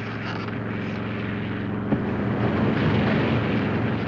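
Propeller airplane engines droning steadily inside the cabin, with the rush of air through the open cabin door growing a little louder. A single sharp click comes about two seconds in.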